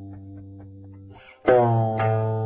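Solo guqin: a low plucked note with many overtones dies away slowly, then about one and a half seconds in a new note is plucked loudly, its pitch sagging slightly just after the attack.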